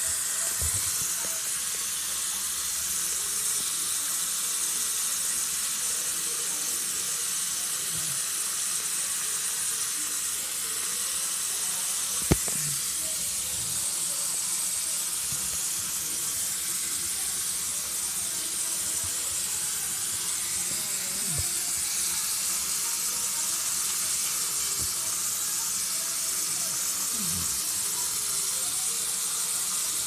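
A steady hiss, strongest in the high range, with one sharp click about twelve seconds in.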